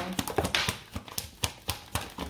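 Tarot cards being handled and dealt onto a tabletop: a run of sharp card clicks and taps, about three a second.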